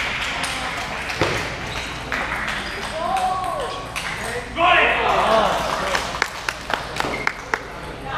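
Table tennis ball clicking off rackets and table in a rally. About halfway through there is a loud vocal shout with a burst of crowd noise, the loudest part, as the point ends. Near the end come a handful of sharp ball bounces.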